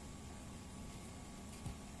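Faint steady room hiss while avocado flesh is scooped out of its skin by hand over a stainless steel cup, with one soft thud near the end.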